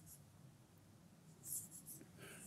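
Near silence: room tone, with one faint, brief rustle about three-quarters of the way through.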